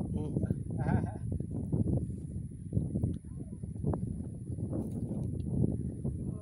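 Wind rumbling and buffeting on the microphone. A person's voice is heard briefly about a second in, without clear words.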